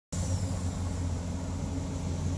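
Steady low hum of a car's idling engine, heard inside the cabin.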